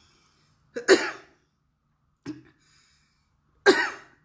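A woman coughing: one loud, sharp cough about a second in, a small one a little after two seconds, and another loud cough near the end. She is recovering from COVID-19.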